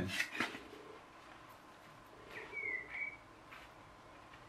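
One short whistled bird call, a single thin note lasting under a second, about two and a half seconds in, over quiet garden background.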